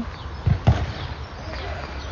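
Two dull thuds about a fifth of a second apart, over a steady low rumble.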